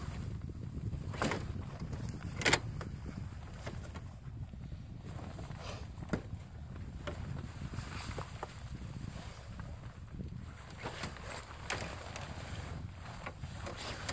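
Steady wind noise on the microphone, with ice-shanty fabric rustling and a few sharp knocks from the shelter's frame as it is pulled up; the loudest knock is about two and a half seconds in.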